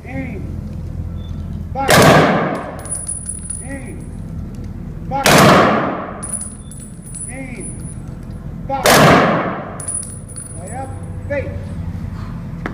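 Rifle honor guard firing a three-volley salute: three loud rifle volleys about three and a half seconds apart, each fired together as one crack that dies away briefly.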